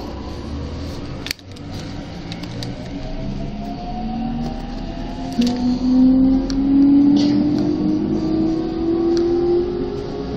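Electric commuter train on the JR Chūō-Sōbu Line, heard from inside the car as it pulls out of a station. The traction motors whine, several tones rising steadily in pitch together as the train gathers speed. There is one sharp click about a second in.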